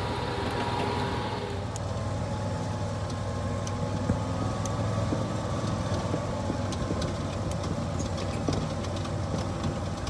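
John Deere Gator utility vehicle driving over grass, its engine running with a steady low hum and light clicks and rattles from the body. A rushing noise over it fades out about a second and a half in.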